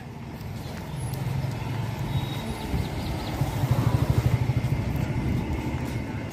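A motor vehicle's engine running close by over general street noise, with a low pulsing hum that is loudest a little past the middle.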